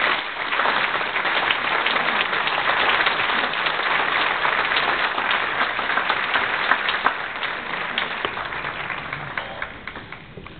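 An audience applauding at the end of a choral performance, a dense patter of many hands clapping that thins out near the end.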